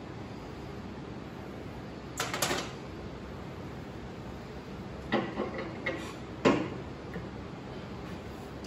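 Metal beater drive shaft of a Taylor C712 soft-serve machine clicking and knocking against the freezing cylinder as it is fitted into the rear of the cylinder and turned to lock. The knocks come in short clusters about two, five and six seconds in, the last one the loudest, over a steady low hum.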